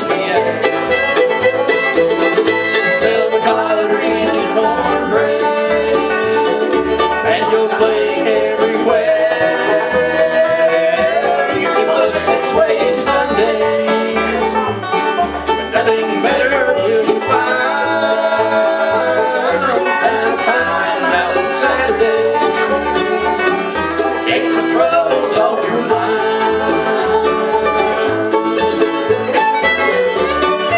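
Bluegrass band playing an instrumental break with no singing: banjo and fiddle out front over strummed acoustic guitar and mandolin, with an upright bass keeping a steady beat.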